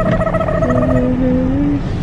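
Steady road and engine rumble inside a moving car's cabin, with a few held melodic notes sounding over it.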